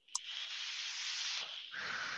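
A person taking a long draw on a vape and then blowing out the vapour. A steady airy hiss runs for about a second and a half, breaks briefly, then the lower hiss of the exhale follows.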